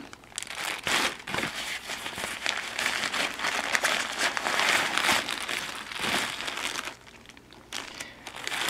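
Clear plastic packaging crinkling irregularly as a T-shirt is handled and pulled from it. The crinkling stops about a second before the end.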